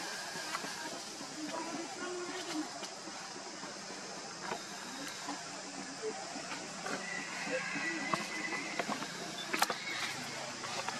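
Outdoor ambience: a steady hiss with faint, indistinct voices and scattered small clicks. There is a faint high tone around two-thirds of the way in, and a sharp click near the end.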